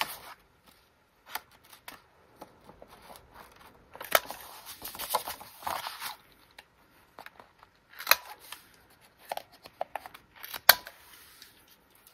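Corner-rounder punch clicking through the corners of a sheet of paper: about three sharp clicks a few seconds apart, with the paper sliding and rustling as it is turned between corners.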